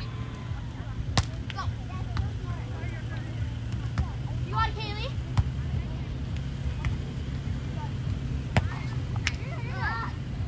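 Beach volleyball rally: about five sharp slaps of hands and forearms striking the ball, a second or few apart, over a steady low rumble, with a faint voice briefly in the middle.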